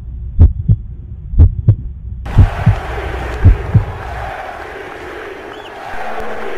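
Heartbeat sound effect: four double thumps, deep and loud, about one a second over a low hum. About two seconds in a hissing wash of noise swells in, and it carries on after the thumps stop near four seconds.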